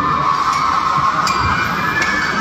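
Arena crowd screaming and cheering, a steady high wash of many voices.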